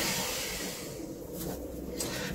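A long, slow exhaled breath, soft and airy, tapering off over about a second.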